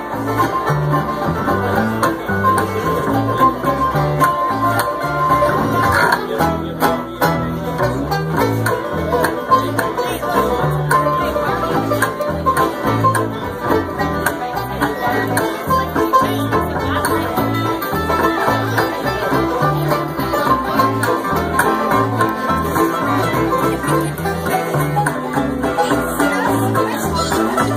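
Live bluegrass instrumental: banjo, mandolin, acoustic guitar and upright bass playing together, with the bass keeping a steady low beat underneath.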